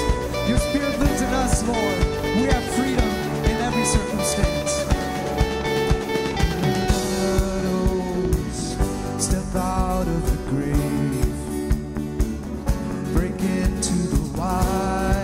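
Live worship band music: a drum kit keeps a steady beat under guitar and a male lead vocalist singing into a handheld microphone.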